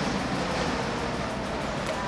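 Steady outdoor background noise, an even hiss and rumble with no distinct event.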